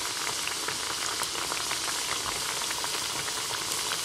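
Oil sizzling steadily in a pot on the stove as rice-flour poricha pathiri fries: a continuous hiss with many small crackles.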